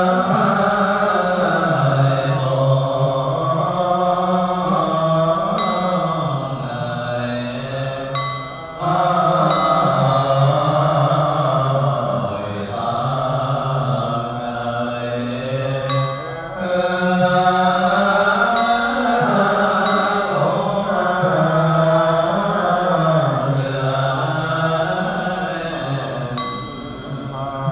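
Buddhist monks chanting a slow, melodic liturgical chant, the lead voice carried through a microphone. It flows almost without a break, with one short pause for breath about eight seconds in.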